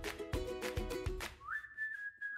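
Background music with a steady beat breaks off a little over a second in. A single whistled note slides up into its place and holds.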